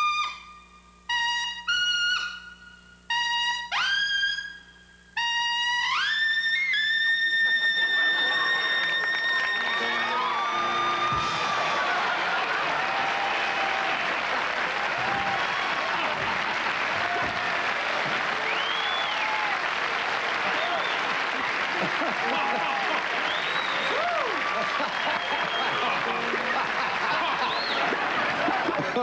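Solo trumpet playing a run of short notes that climb, then sliding up into a long held note in the extreme high register around concert high B-flat. From about seven seconds in, a studio audience laughs and applauds loudly until the end.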